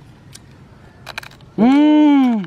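A man's long, loud drawn-out 'uuu' cry starting near the end, its pitch rising and then falling. Before it there are only a few faint clicks.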